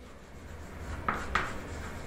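Chalk writing on a blackboard: faint scratching and rubbing strokes, with two short, sharper strokes a little after a second in.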